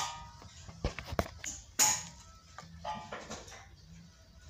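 Several sharp metallic clanks and knocks, each with a brief ringing, from rusty car body parts being handled. The loudest come right at the start and about two seconds in, with smaller knocks around a second in and near the three-second mark.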